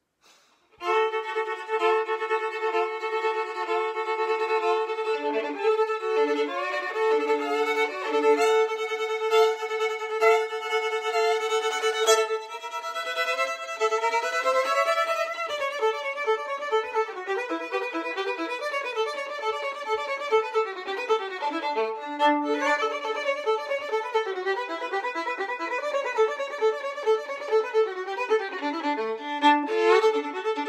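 Solo violin played fiddle-style. It starts about a second in with long held, sliding notes, climbs in quick rising runs, then goes into fast short notes.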